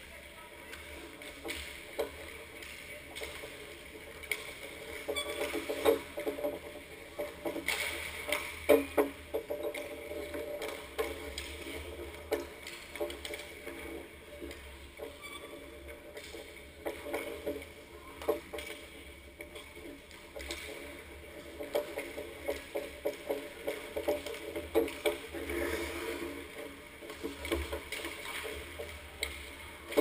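Ice hockey warmup at the net: skate blades scraping on the ice under a string of sharp, irregular knocks from pucks and sticks striking the ice, pads, posts and boards.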